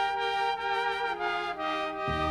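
A recorded pop song: a trumpet plays a melody of held notes that step to a new pitch about every half second.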